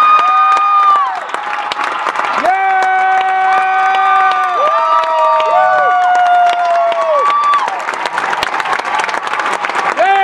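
Theatre audience applauding and cheering, with long, high-pitched screams held for a second or two each over the clapping.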